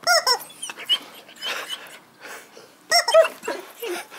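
A rubber squeaky chicken toy squeaking as it is pressed underfoot, twice, about three seconds apart. A dog makes angry noises at the toy being squeezed.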